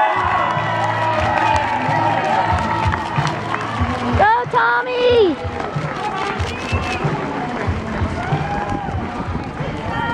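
Spectators cheering and chattering as a pack of runners sets off in a road race, with a loud whoop about four seconds in.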